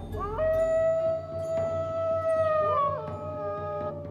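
A wolf howl over a low musical drone. The howl glides up quickly and holds one long note, then drops in pitch about three seconds in as a second howl briefly crosses it.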